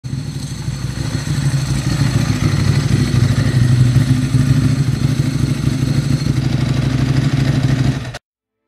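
Yamaha V-twin cruiser motorcycle engine running steadily with an uneven low pulse.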